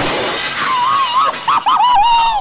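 A sudden crash of shattering glass, a comedy sound effect, dying away over a second or so. A wavering high tone comes in under it and carries on.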